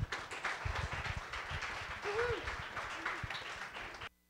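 Audience applauding, a dense run of claps throughout.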